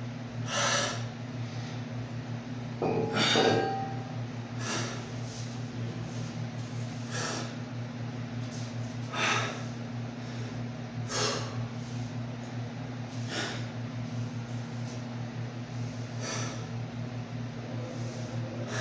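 A man breathing hard while recovering after a weightlifting set: short, forceful exhales roughly every two seconds, the loudest about three seconds in with a brief vocal sound, over a steady low hum.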